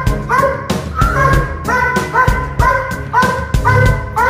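A protection-trained dog barks in a steady run, about three barks a second, as it lunges on its leash at a decoy during bite-work. Background music plays under the barking.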